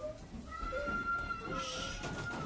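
A child's voice making short rising-and-falling vocal noises, then one long high-pitched squeal held from about half a second in.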